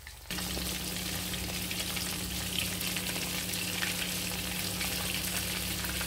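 Breaded fish shallow-frying in hot oil in a frying pan: steady, dense sizzling and crackling that starts abruptly just after the beginning, with a low steady hum underneath.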